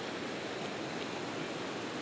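Fast river rapids rushing steadily over rocks: an even, unbroken rush of water.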